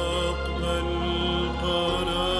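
Slow Arabic Christian hymn: a long held note over a steady low sustained accompaniment.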